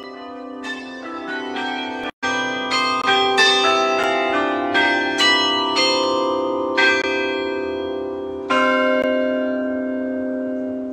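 Church bells in an outdoor bell frame ringing in a quick, uneven run of overlapping strokes, each tone ringing on under the next. There is a brief cut-out about two seconds in, after which the bells are louder. The strokes thin out, and the last one near the end is left to ring.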